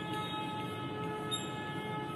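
A steady hum made of several held tones at once, unchanging in pitch and level.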